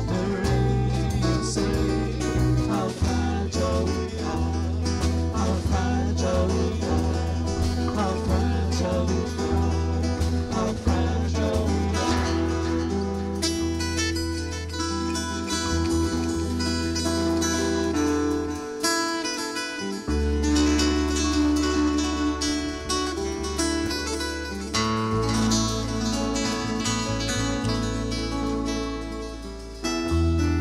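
Live band playing an instrumental passage: electric and acoustic guitars over bass guitar and drums. The bass drops out for about a second a little past the middle, then comes back in.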